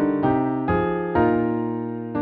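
Keyboard music: slow chords struck one after another, each fading before the next, with the last chord held about a second.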